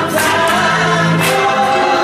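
Church choir singing a gospel song over accompaniment, with a light beat striking about once a second.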